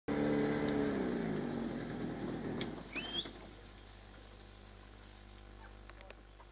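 Small boat's outboard motor running and throttling down, its pitch falling over the first second and a half before it fades out. A brief rising chirp comes about three seconds in.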